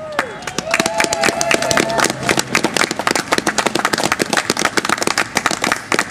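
Audience applause, many hands clapping densely and irregularly, with a voice calling out over the clapping in the first two seconds.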